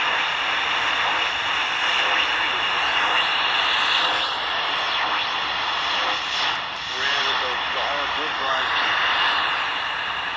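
Tecsun R9012 portable shortwave receiver's speaker giving out a steady hiss of static on the 80-metre band. A faint AM voice from an amateur radio operator comes up through the noise from about seven seconds in.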